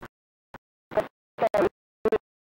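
Short, broken fragments of voice received over a CB radio, chopped off into dead silence between the bursts.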